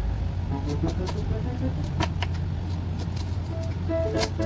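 A kitchen knife slicing peeled ginger on a wooden cutting board, with a few sharp cuts about two seconds in. A steady low hum and soft background music run underneath.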